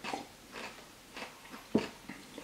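A few faint, short clicks in a quiet room, the sharpest one about three-quarters of the way through.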